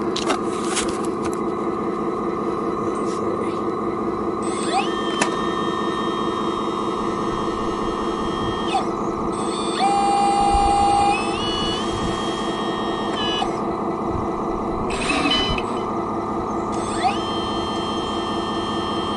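Radio-controlled A40G articulated dump truck's electric motor and gears whining steadily as its bed tips up to dump a load of dirt, with higher-pitched whines rising in steps midway and a slightly louder stretch about ten seconds in.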